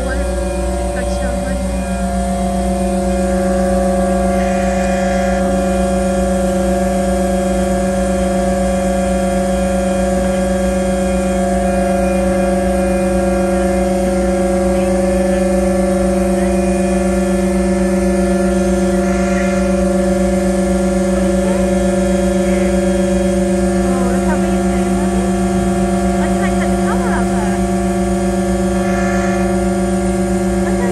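A diesel generator running at a constant speed: an unchanging, steady drone with several fixed hum tones.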